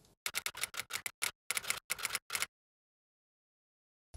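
A quick, uneven run of sharp clicks, about six a second, stopping abruptly about two and a half seconds in.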